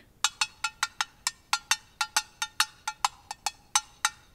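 A chopstick tapping an empty metal cat food can, a quick even run of about five light ringing strikes a second, starting a moment in.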